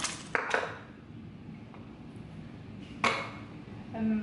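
A few sharp knocks of kitchen items being handled and set down on a counter: three in quick succession at the start, then one more about three seconds in, with quiet between.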